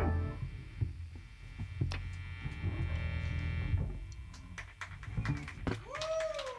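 Electric guitar chord ringing out through a distorted amplifier and fading after the final song ends. A low amp hum and faint steady tones carry on under a few small clicks.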